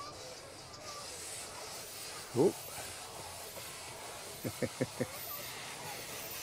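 Small narrow-gauge steam locomotive going by, its steam hissing steadily. A man laughs briefly twice over it.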